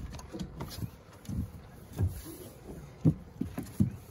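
Irregular low knocks and bumps against the side of a boat, about seven in all and the two sharpest near the end, as a jug line with a hooked catfish is hauled up alongside.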